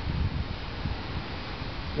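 Outdoor wind on the microphone: a steady hiss with uneven low buffeting, strongest in the first half second.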